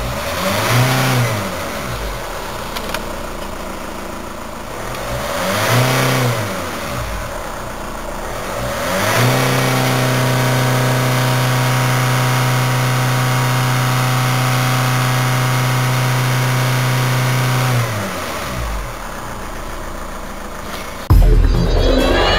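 2013 Holden Captiva's 2.2-litre four-cylinder turbo-diesel, in Park, is blipped twice from idle. It is then held at a steady pitch, about 3000 rpm on the tachometer, for some eight seconds before dropping back to idle. Music starts near the end.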